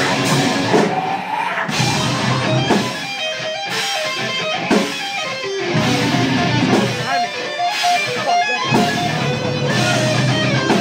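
Deathcore band playing live: distorted electric guitar riffing with bass and drums. Several times the low end drops out briefly while picked guitar notes carry on.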